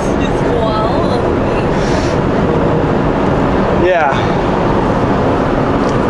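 Steady drone of a semi truck's engine and tyre noise, heard from the cab while it cruises along the highway.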